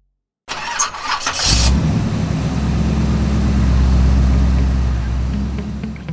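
Car engine started with a push button: the starter cranks for about a second, then the engine catches and settles into a steady idle that fades near the end.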